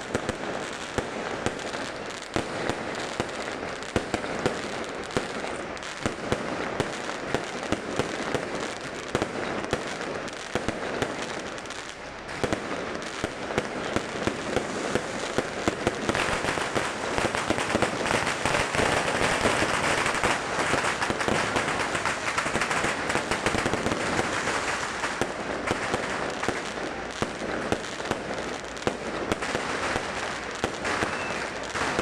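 An aerial fireworks display: a continuous crackle of many small bursts with frequent sharp bangs, thickest and loudest a little past halfway.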